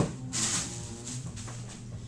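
A sharp knock as the lid of a camera carrying case swings open, then a brief rustle of plastic wrapping and small handling sounds as the contents are handled, over a steady low hum.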